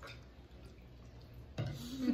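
Quiet table eating sounds: a metal spoon scooping chili from a ceramic bowl, with a few faint clicks. A person starts to laugh near the end.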